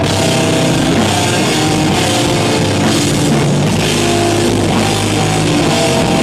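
Hardcore metal band playing live: electric guitar, electric bass and drum kit, loud and unbroken.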